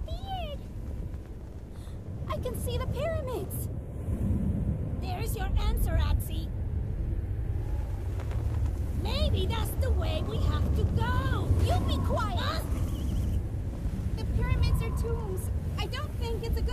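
Steady low rumble of a sandstorm wind, with characters' wordless cries and exclamations rising and falling over it in several short bursts.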